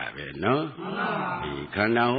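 Speech only: a monk's voice continuing a Buddhist sermon in Burmese, in a measured, recitation-like cadence.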